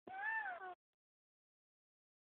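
A toddler's voiced, whistle-like "hoo" copying his father's whistle: one short call of under a second that rises and then falls in pitch.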